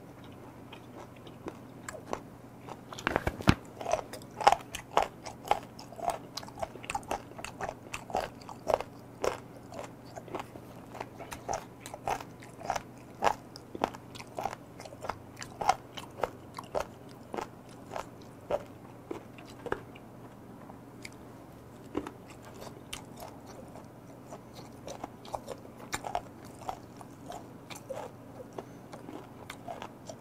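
Close-up chewing of raw fermented skate (hongeo), a run of short crunchy chews at about two a second that starts about three seconds in and thins out near the end; the crunch comes from the skate's cartilage.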